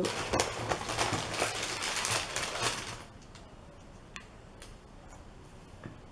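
Rustling and crackling of stamps and cards being handled for about three seconds, then only a few faint taps.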